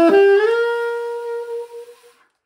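Conn 6M alto saxophone playing a quick rising run of a few notes into one held note that fades out near the end.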